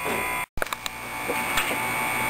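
Room tone broken off by a sudden split-second dropout about half a second in, then steady outdoor background noise with a few faint clicks.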